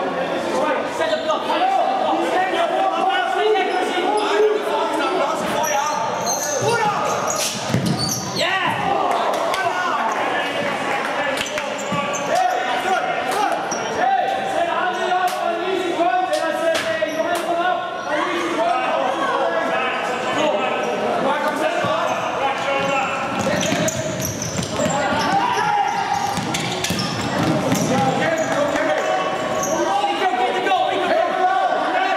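Futsal ball being kicked and bouncing on a hard sports-hall court, sharp thuds echoing around the hall, with players' voices calling throughout.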